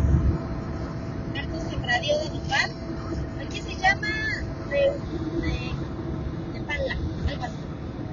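Steady low rumble of road and engine noise inside a car cabin at highway speed. Short snatches of voice come over it now and then.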